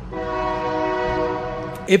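A man's voice holding one steady, drawn-out "uhhh" for nearly two seconds, flowing straight into speech.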